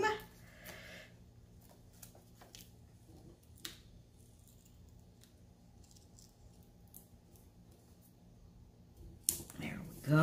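Quiet handling of paper and foam adhesive dots on a craft table: a few soft, scattered ticks and rustles over a low, steady room hum.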